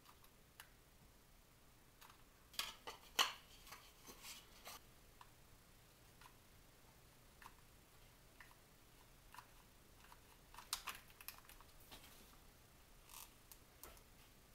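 Faint, scattered clicks and taps of a plastic funnel and tube being handled and glued together with a hot glue gun, in small clusters about three seconds in, around four seconds, and near eleven seconds.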